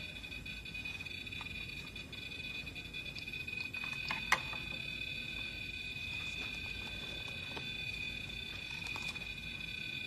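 An electronic ghost-hunting alarm, a REM-pod-type device with an antenna, sounding a steady high-pitched electronic tone without a break. The investigator takes it as triggered by a spirit's presence. A single faint tick comes about four seconds in.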